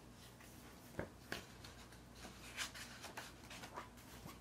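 Faint rustling and a few light taps of a picture book's paper pages being handled and turned.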